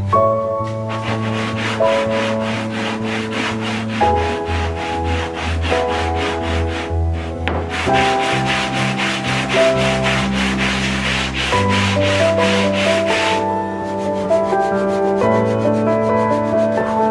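A wooden workpiece is rubbed back and forth by hand over sandpaper laid flat on the bench, making quick rhythmic rasping strokes. The strokes pause briefly about seven seconds in and stop a couple of seconds before the end. Soft background music plays throughout.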